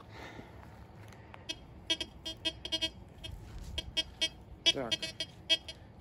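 Chinese TX-850 metal detector giving a run of short, irregular electronic beeps, starting about a second and a half in, as its coil passes over the dug soil. The repeated signals show metal still lying in the hole.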